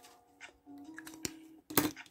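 Faint background music with a steady held note, with a click partway through and a brief loud rustle of notebook paper near the end as a spiral notebook's page is handled.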